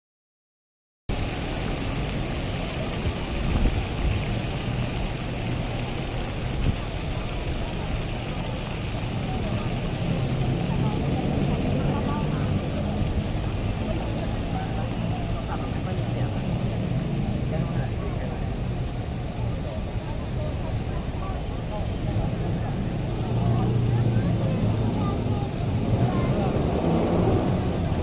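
Busy city street ambience: a crowd of passers-by talking and walking, over a steady rumble of traffic. It starts suddenly about a second in, after silence.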